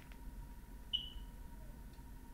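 Faint room tone with a low steady hum, and a single short, faint high-pitched beep about a second in that fades away quickly.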